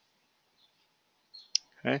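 Near silence, then a single short, sharp click about one and a half seconds in, just before a spoken "okay".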